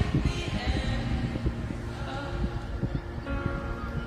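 Live concert recording of a band playing a slow song outro, with held tones over a deep low rumble.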